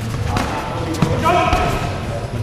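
A few sharp thuds from taekwondo sparring, padded kicks and punches landing and feet striking the mat, echoing in a large sports hall. A voice calls out in the second half.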